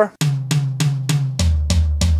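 Electronic drum kit (Roland V-Drums) playing an even run of tom strikes, about three a second. Four hits on the higher rack tom are followed, a little over halfway through, by lower, longer-ringing hits on the floor tom, as the opening of a four-over-two fraction fill.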